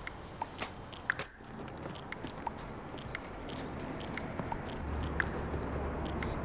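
Background noise with scattered small clicks and crackles, and a low hum coming in near the end.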